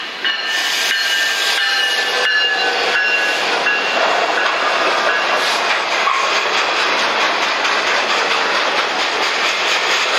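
Freight locomotive air horn sounding a chord as the lead engines pass, cutting off about two to three seconds in. After it comes the loud, steady rolling noise of freight cars going by on the rails.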